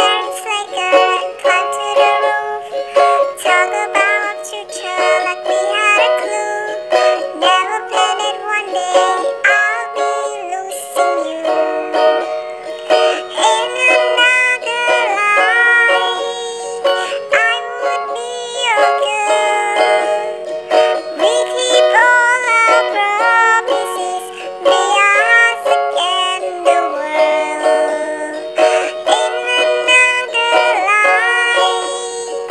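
A pop song covered on ukulele, with a high singing voice that has been digitally edited over the plucked accompaniment.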